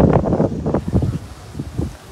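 Wind buffeting the phone's microphone in irregular gusty rumbles, loudest at the start and easing toward the end.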